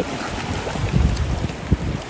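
Wind buffeting the microphone: an uneven low rumble that rises and falls, over a faint steady hiss.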